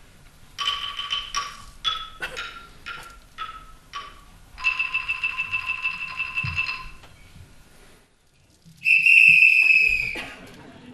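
Small xylophone struck with mallets: a string of single ringing notes, then a fast roll on one note for about two seconds that dies away. Near the end a loud, steady whistle tone comes in, the loudest sound of all.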